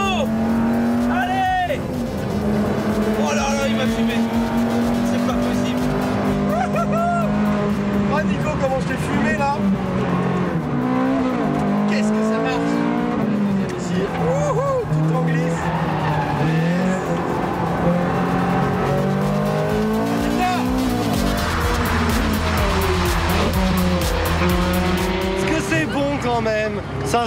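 High-performance sports car engines, a Ferrari 430 Scuderia V8 and a Lamborghini Gallardo Superleggera V10, revving hard on a race circuit. The engine note climbs and drops back repeatedly through gear changes, with tyres squealing in the corners.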